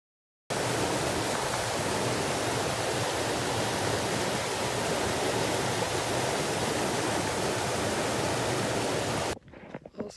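Mountain stream rushing over boulders: a steady rush of white water that cuts in sharply about half a second in and cuts off suddenly near the end.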